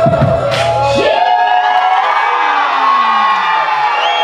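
Line-dance music with a strong beat that stops about a second in, leaving a crowd cheering and whooping.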